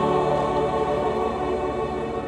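Mixed church choir with a small orchestra of strings and piano holding one sustained chord that slowly fades away, the closing chord of the piece.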